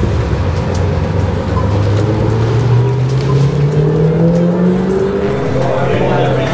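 Street traffic: a motor vehicle's engine rising steadily in pitch as it accelerates, over about three seconds.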